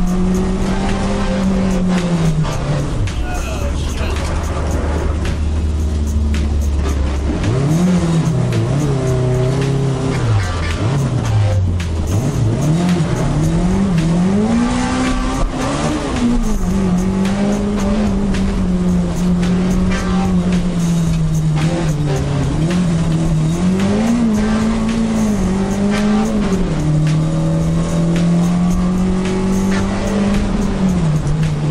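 A car's engine driven hard through an autocross course, its pitch repeatedly rising under acceleration and falling off between the cones. The tyres squeal through the corners, where the car understeers badly.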